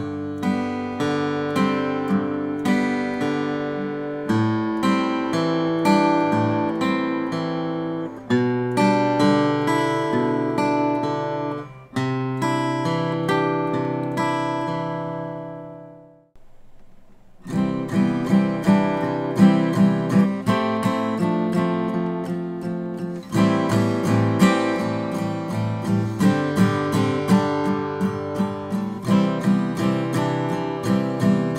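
Takamine TSF48C steel-string acoustic guitar played slowly through a G–Am7–G6/B pattern, bass notes on the downstrokes and melody carried by the upstrokes, the notes left ringing. About halfway it fades out, a second of silence, then a new passage of steady downstrokes over C, Fadd9, Am7 and G, the melody in each stroke.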